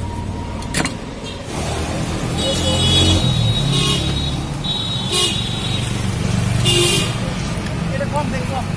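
Street traffic: a motor vehicle engine running close by, with several short, high-pitched horn toots in the second half, and voices in the background.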